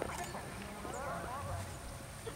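Soft hoofbeats of a horse walking on grass, with faint distant voices behind.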